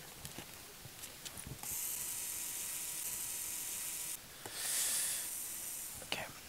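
A steady high hiss with a faint steady tone under it, switching on about one and a half seconds in and cutting off abruptly just past four seconds. It swells up again briefly and fades. A few faint clicks come before it.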